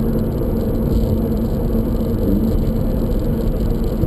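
Subaru BRZ's 2-litre boxer engine running steadily while the car drives along a street, heard from a camera mounted outside the car, with a low rumble of road and wind noise.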